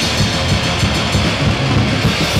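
Death metal demo recording: drums and heavily distorted instruments playing a fast, dense, driving passage with no let-up.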